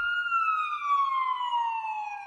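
A siren sound effect: one slow wail that peaks just after the start and then glides steadily down in pitch. It works as an alert cueing an incoming message.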